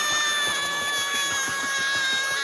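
A cartoon character's long, high-pitched scream, held as one unbroken cry at a nearly steady pitch.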